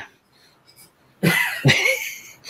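A pause, then about a second in, two short breathy bursts from a man's voice as he starts to laugh.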